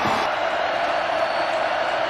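Football stadium crowd noise: a steady din of many voices just after a third-down stop.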